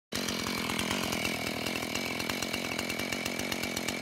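A small motor running steadily, with a fast rattle and a high whine.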